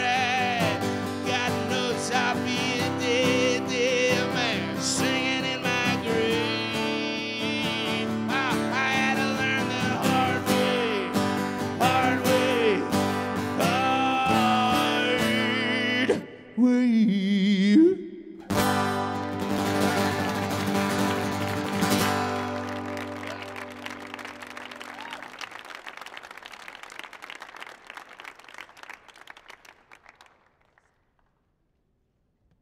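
Solo acoustic guitar strumming under a man's wordless singing, closing out an upbeat song. After two short breaks, the last strummed chord rings on and fades slowly away.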